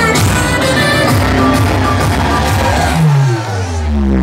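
Loud dance music from a DJ set over a nightclub sound system. Near the end the bass drops out briefly under a falling pitch sweep before the full beat comes back in.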